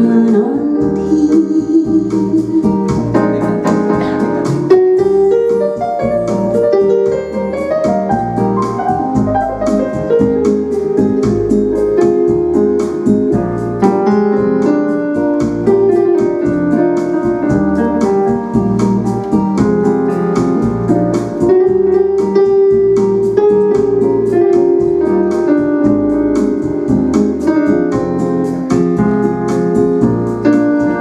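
Yamaha electronic keyboard playing an instrumental interlude: a piano-voiced melody and chords over a steady accompaniment beat.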